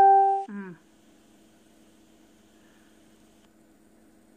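Loud, steady single tone from a phone that cuts off about half a second in. A brief low falling vocal hum follows, then only a faint steady hum.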